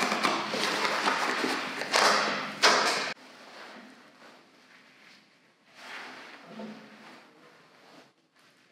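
Old chair-seat lining and padding being torn off by hand: loud tearing and crackling with a few sharp rips, which stops abruptly about three seconds in. Faint rustling of the loose stuffing follows.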